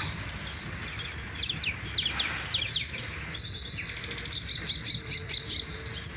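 Small birds chirping: repeated short, high chirps, coming in quicker runs in the second half, over a steady low background hum of outdoor ambience.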